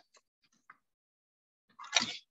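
A few faint small clicks, then near the end one sharp crunching knock as the stone pestle crushes dried avocado seed pieces in a volcanic-stone molcajete.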